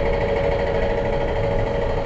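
A steady machine hum with a constant pitch, running evenly throughout.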